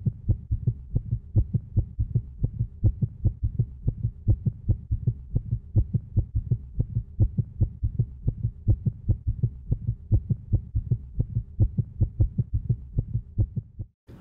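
Heartbeat heard through an ultrasound Doppler: a fast, even train of low pulses.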